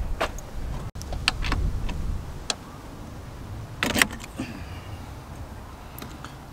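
Scattered clicks and light metallic knocks of tools and parts being handled around a car battery's fuse holder, the loudest a short clatter about four seconds in, over a low rumble during the first couple of seconds.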